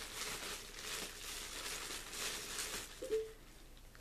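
Paper or packaging rustling and crinkling as mail is handled, with a short hum from a voice about three seconds in.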